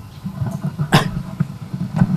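Handling noise from a handheld microphone being picked up: a single sharp click about a second in, over a low, uneven rumble.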